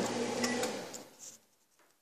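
Microwave oven running with a steady hum, with a couple of light clicks about half a second in; the hum fades and cuts off to silence a little over a second in.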